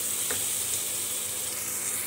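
Chopped onion, capsicum and tomato sizzling steadily as they fry in oil in a nonstick pan, with one light click just after the start.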